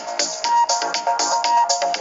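Electronic theme music for a TV news programme: short, bright synth notes over a fast percussive beat.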